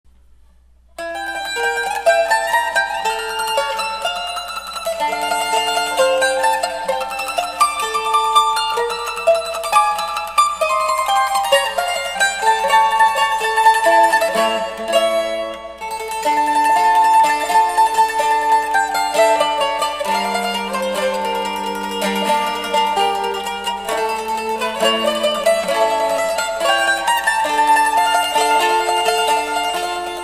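Bowl-back mandolin played solo with a pick in duo style: a tremolo melody over plucked bass and accompaniment notes, beginning about a second in, with a brief pause near the middle.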